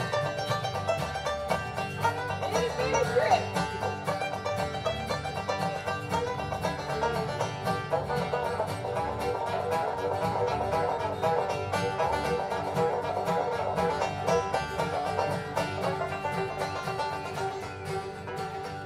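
Bluegrass band playing an instrumental break led by a five-string banjo with fast picked rolls, backed by acoustic guitar, fiddle and upright bass.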